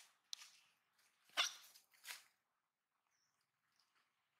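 Two short, sharp animal calls about two-thirds of a second apart, the first the louder, after a couple of faint clicks.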